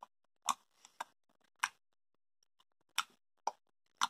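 Wet mouth smacks and tongue clicks of someone chewing a soft salty-licorice candy: about six sharp smacks at uneven intervals, with a longer pause in the middle.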